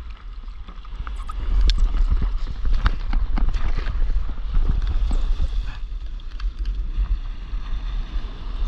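Sea water slapping and splashing against a surfboard as it moves through the water, with many irregular knocks and a low rumble on the microphone. It grows louder about a second in.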